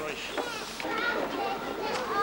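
Crowd chatter: several people talking at once, with some higher children's voices among them.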